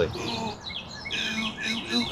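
Wild birds chirping and calling outdoors: short, repeated high chirps over faint background noise.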